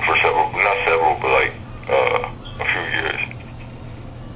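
A person talking in a few short phrases, the words indistinct, over a steady low hum.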